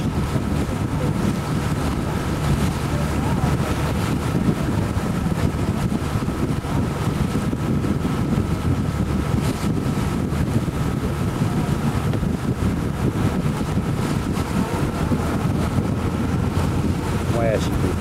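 Steady drone of a boat under way, its engine running, with wind buffeting the microphone.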